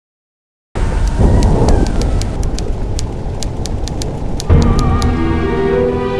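A loud rumbling noise with scattered crackles starts suddenly about a second in, then music with held tones comes in a little past the middle.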